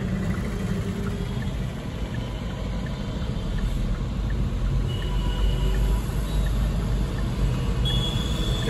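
Hyundai Creta engine idling, heard inside the cabin as a steady low rumble that grows a little louder in the second half.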